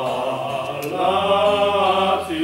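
A trio of older men's voices singing a hymn together, with a long note held through the second half.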